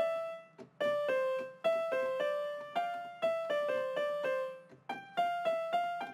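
A software instrument in FL Studio plays a short melody of single plucked, keyboard-like notes, about two to three a second, stepping among a few neighbouring pitches, with two short breaks in the run.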